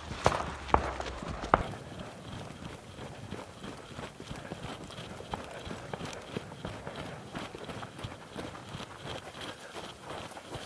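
People running on a dry dirt and gravel trail: a few heavy footfalls in the first second and a half, then a lighter, continuing crunch of steps.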